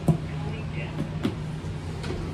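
A sharp click as an Otis elevator car's floor button is pressed, over a steady low hum inside the elevator car, with a couple of lighter clicks about a second later.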